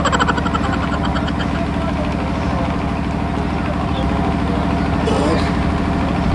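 An engine idling steadily, a low even rumble, with a short rapid higher-pitched rattle in the first second or so.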